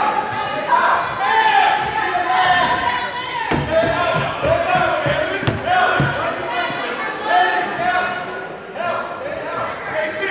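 A basketball bouncing on a hardwood gym floor a few times, under players' and spectators' shouts and calls that echo around the gym.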